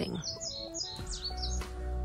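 A small bird chirping a quick run of short, high, falling notes in the first second, over background music with sustained notes and a deep hum coming in about a second in.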